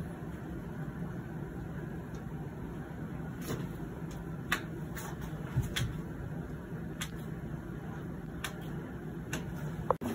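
Several short sharp clicks, spaced roughly a second apart through the middle and later part, over a steady low room hum: finger and wrist joints popping as the hand is manipulated.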